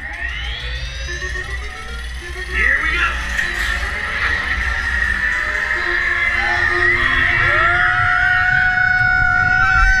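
Roller coaster riders screaming and whooping on the moving train, with long wavering cries and a long held yell from about three-quarters of the way through, over a constant low rumble of the train and rushing air on the microphone.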